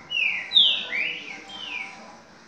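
A caged songbird sings a phrase of four loud, clear whistled notes, each about a third of a second long and mostly sliding downward in pitch. The second note is the loudest.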